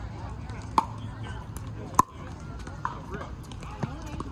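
Pickleball paddles striking a plastic ball: three sharp, ringing pocks, about a second in, at two seconds (the loudest) and near three seconds, with fainter hits from neighbouring courts and murmuring voices in the background.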